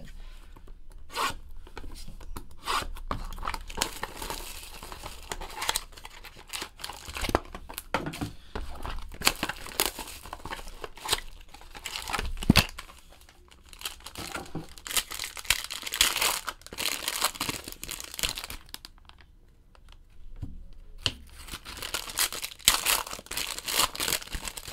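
Clear plastic wrapping of a trading-card box and pack being torn open and crinkled by hand: a run of crackling rips and rustles, with a short lull a few seconds before the end.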